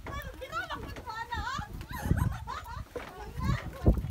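High-pitched voices, which sound like children, chattering and calling out. There is a dull low thump about two seconds in and a louder one just before the end.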